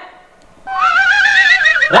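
A high, wavering cry starts after a brief lull about half a second in. It climbs in pitch with a strong wobble, then falls away near the end.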